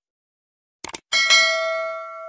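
Subscribe-button animation sound effects: a quick double mouse click about a second in, then a bright notification bell ding, struck twice in quick succession and ringing on as it slowly fades.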